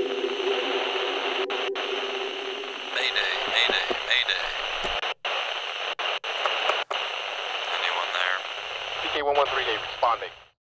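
Radio static on a helmet comlink: a steady hiss with a few sudden dropouts to silence midway, and garbled voice fragments breaking through near the middle and the end, the sound of a weak signal being picked up.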